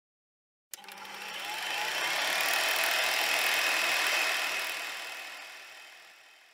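Whoosh sound effect for an animated logo intro: a noisy rush that starts suddenly about a second in, swells for a couple of seconds, then slowly fades away.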